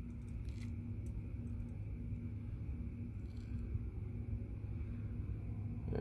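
Steady low background rumble with a faint hum that comes and goes, and a few light ticks.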